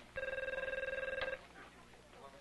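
One ring of an electronic office telephone: a rapid warbling trill on a steady high tone, lasting just over a second.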